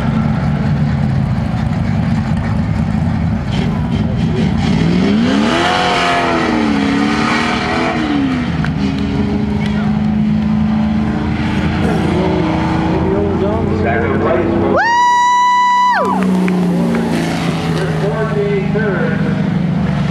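Late model stock car engines running on the track, one engine's pitch rising and falling as it goes by about five seconds in. About fifteen seconds in a loud horn sounds once, holding one pitch for about a second. A public-address voice comes in faintly.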